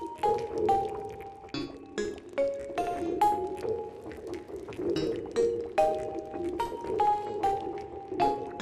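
Steinberg Materials Wood & Water "Marimba Nature" patch, a sampled marimba played as a slow line of single struck notes about two a second, each ringing briefly, over a continuous watery texture.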